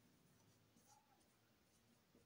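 Near silence, with faint sounds of a marker pen writing on a whiteboard.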